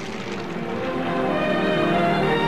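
Sustained, layered droning chord of background music, swelling gradually in loudness.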